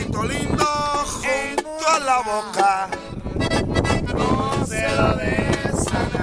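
Accordion playing with men's voices over it, loud and close.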